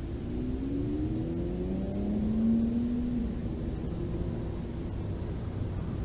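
A distant motor vehicle's engine accelerating, its note rising over about three seconds and then dropping away, over steady low background noise.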